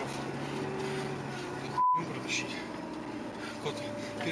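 Muffled talk inside a moving car over a steady engine and road hum, cut by one short, loud, high beep about two seconds in: a censor bleep over a swear word.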